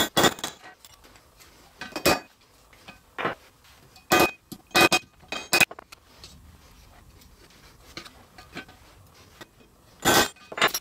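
Small hammer striking brass rivets through walnut slats resting on a steel I-beam, setting the rivets: sharp metallic clinks in irregular single strikes and short groups. The strikes are loudest in the first six seconds, with a few lighter taps near the end.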